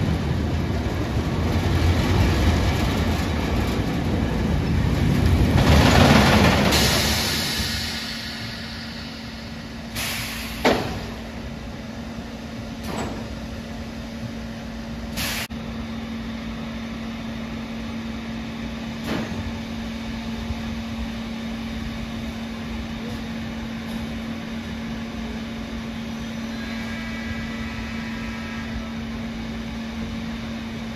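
A Vekoma Boomerang steel roller coaster train running through its loop with a loud rumble of wheels on track, fading away after about seven seconds. After that a steady low motor hum runs on while the train is held high on the spike, with a few sharp metallic clanks scattered through.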